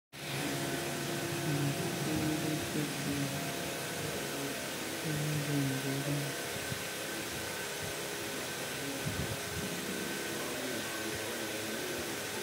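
A steady hiss of background noise, with faint voices during roughly the first six seconds.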